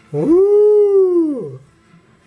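A person's voice giving one long howl that rises in pitch, holds, then slides back down, lasting about a second and a half.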